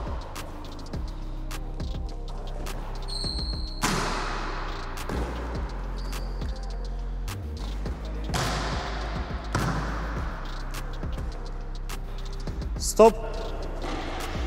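Volleyballs struck and passed in a gym, a few sharp hits several seconds apart, each followed by a short echo. Background music plays throughout.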